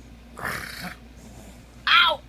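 A young child's playful vocal noises close to the microphone: a breathy huff about half a second in, then a short high-pitched squeal falling in pitch at the end, the loudest sound.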